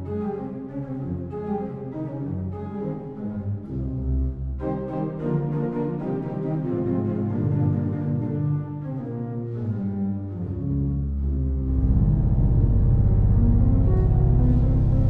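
Pipe organ playing a sustained chordal passage. A deep held bass comes in about ten seconds in, and the sound grows louder near the end.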